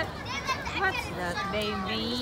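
Children's voices talking and calling out, high-pitched and sliding up and down, with a higher call near the end.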